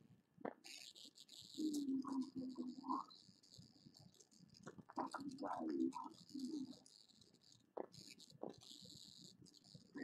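An episode's soundtrack playing faintly: muffled voices and sound effects, with two stretches of hissing noise, one early and one near the end.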